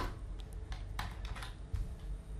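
Computer keyboard typing: a handful of separate, unevenly spaced keystrokes, the first the sharpest.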